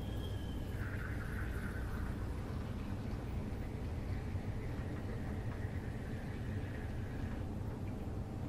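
Water being squeezed from a plastic squeeze bottle into a small plastic measuring cup: a faint, steady trickle that stops shortly before the end, over a low steady room hum.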